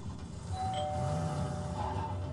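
Two-note doorbell chime, a higher tone then a lower one, starting about half a second in and ringing on to the end, over low background sound.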